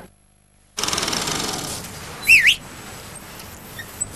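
A short, loud whistle that dips and then rises in pitch, about halfway through, over light background noise, after a brief silence at the start.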